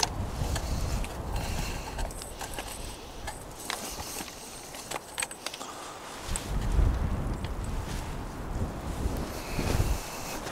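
Wind gusting on the microphone in low rumbles, easing off a few seconds in and picking up again from about six and a half seconds, with scattered clicks and scuffs of footsteps and gear handling on rocky ground.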